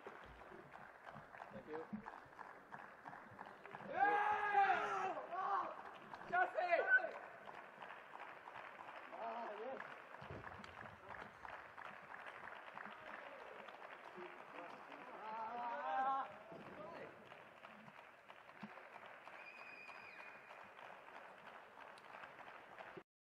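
Loud, high-pitched celebratory shouts of a table tennis player and his team at the winning point, two bursts about four and six seconds in and a shorter one later, over steady noise from the hall.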